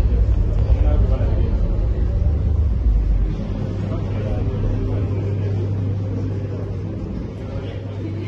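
Indistinct chatter of people talking in a crowded room, over a steady low hum. A deep rumble underneath eases off about three seconds in.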